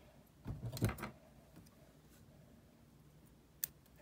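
Quiet room tone at a fly-tying vise, then one short, sharp click near the end as the tying scissors are brought in to trim the wire tag.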